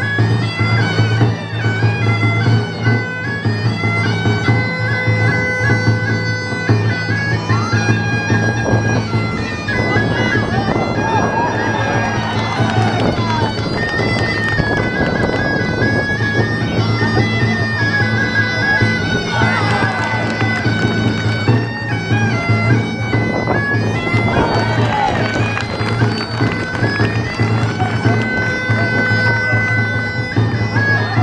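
Gaita de fole (Zamoran bagpipe) playing a stepping dance tune over its steady low drone, with a tamboril drum beating along throughout.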